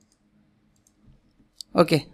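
A faint low hum with a few soft ticks, then one sharp click of computer input near the end, just before a man says "okay".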